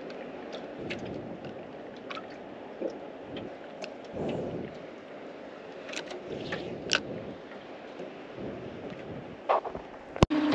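Steady wind and water noise around a small aluminium boat drifting, with scattered light clicks and taps and a brief louder surge about four seconds in.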